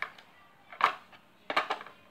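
A few sharp clicks and knocks of batteries being handled and fitted into a weather-station clock's plastic battery compartment: one sharp click a little under a second in, then two quick ones about a second and a half in.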